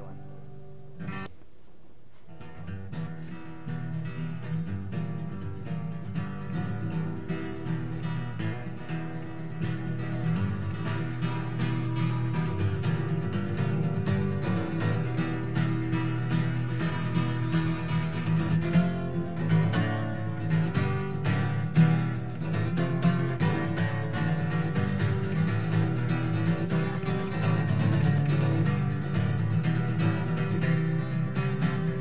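A short click about a second in, then a steel-string acoustic guitar strummed and picked in a steady rhythm, growing a little louder.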